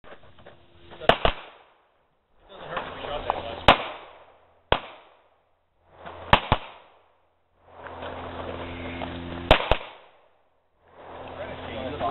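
Handgun shots, about eight in all, mostly in quick pairs a fraction of a second apart, with a couple of single shots. The groups are separated by abrupt drops to dead silence where the clips are spliced together.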